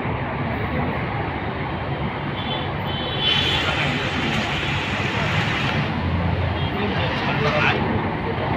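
Steady road noise from a moving vehicle, with a louder rushing swell from about three to six seconds in, like another vehicle going by.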